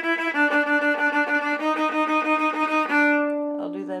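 Solo viola, bowed, playing fast repeated sixteenth notes (about seven a second) that step between a few pitches, settling on a longer held note about three seconds in. This is the bottom line of a divided passage from an orchestral viola excerpt, played as a demonstration.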